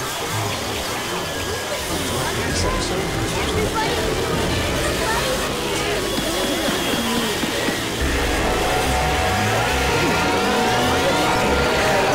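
Many company-logo soundtracks playing over each other at once: a dense jumble of music, voices and effects. Several rising whistle-like glides pile up near the end, and the sound gets a little louder about two-thirds of the way in.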